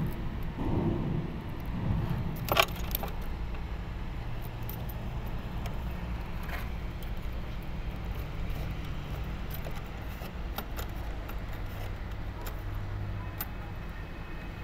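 Clicks, small clinks and rustling from wires being handled and pushed into a plastic terminal block in a refrigeration unit's control box, with a sharper click about two and a half seconds in. A steady low rumble runs underneath.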